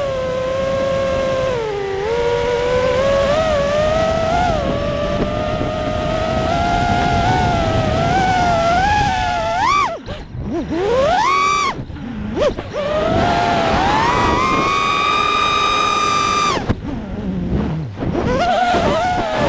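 FPV freestyle quadcopter's electric motors and propellers whining, the pitch rising and falling with the throttle. About ten seconds in the whine cuts out briefly on a dive and then surges back in a fast rising sweep. It holds a steady high pitch for a couple of seconds and drops away shortly before the end.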